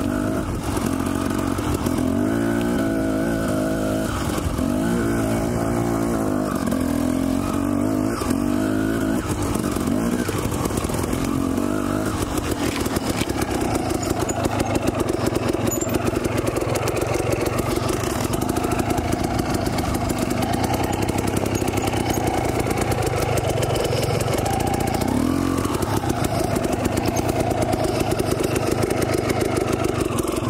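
Husqvarna TE 250 two-stroke dirt bike engine running under the rider, revving up and down in repeated rises and falls of pitch for about the first ten seconds, then running more steadily at low speed.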